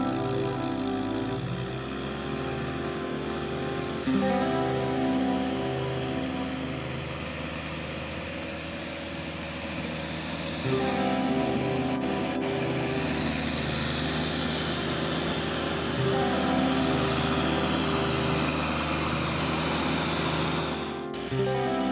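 Background music: sustained chords that change every few seconds, over a steady hiss.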